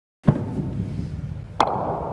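Snooker balls clicking: two sharp clicks, one just after the start and another about a second and a half in, each with a brief ring, over a low steady hum.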